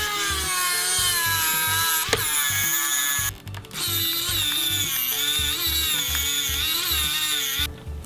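Small electric screwdriver running as it drives a screw into a plastic bracket, a whine that stops briefly about three seconds in and then runs again, over background music with a steady beat.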